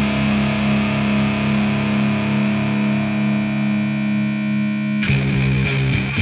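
Instrumental noise-rock passage: distorted electric guitar through effects holding a steady droning chord, changing abruptly about five seconds in to a lower, choppier part.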